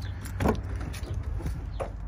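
Rear door of a 2020 Honda Civic being opened: the latch clicks and the door thumps about half a second in, followed by a few lighter clicks, over a steady low rumble.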